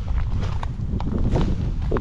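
Footsteps at a walking pace over dry washed-up reeds and sticks, with wind rumbling on the microphone.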